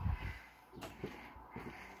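Footsteps and handheld-phone handling noise while walking onto a wooden deck: a cluster of low thumps at the start, then a few light knocks.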